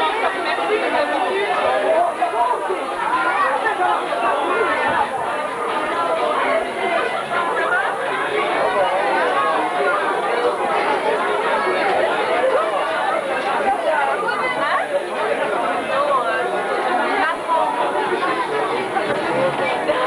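A crowd of people talking at once in a packed room: steady, overlapping chatter with no single voice standing out.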